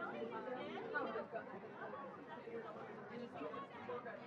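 A steady hubbub of many people talking at once, overlapping voices with no single clear speaker.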